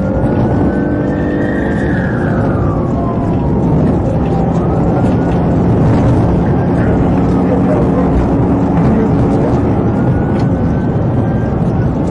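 Police siren wailing in slow rises and falls, over heavy engine, tyre and wind noise from a patrol car driving fast.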